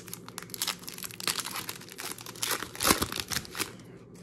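Foil wrapper of a 2023 Prizm football trading-card pack being torn open and crinkled in the hands: a continuous run of crackles and rips, loudest about three seconds in.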